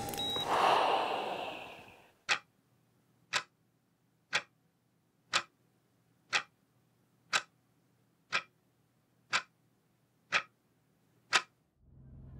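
Clock ticking once a second, ten even ticks against near silence. In the first two seconds, louder background noise fades out before the ticking begins.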